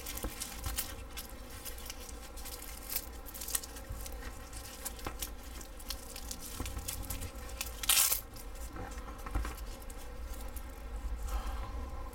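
A nylon knife sheath and its snap retention strap being handled: fabric rustling and scraping with small clicks as the fixed-blade knife is worked into it, and one louder, sharper noise about eight seconds in.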